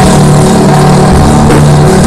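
Live stoner/drone rock from an electric guitar and drum kit: the guitar holds low droning notes that shift a couple of times, over drums and cymbals.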